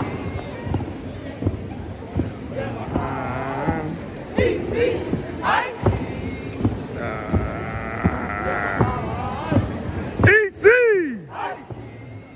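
Stepping: feet stomping and hands clapping on a hard arena floor, mixed with shouting voices and crowd noise. Near the end come two loud rising-and-falling shouted calls.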